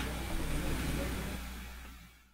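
Steady background hiss with a low hum on a video-call microphone line, fading gradually and dying away near the end.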